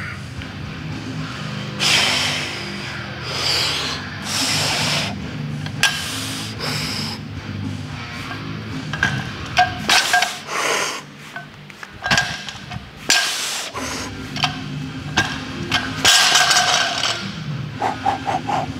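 Background music, with the knocks and clinks of a light barbell being deadlifted and set back down on a rubber platform, and short bursts of hard breathing between reps.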